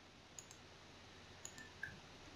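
Faint computer mouse clicks in near silence: two quick clicks about half a second in and two more about a second later.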